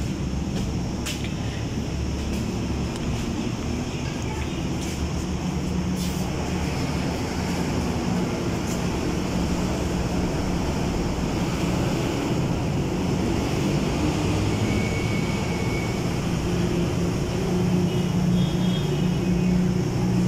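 Steady traffic rumble of a busy street, with indistinct voices mixed in.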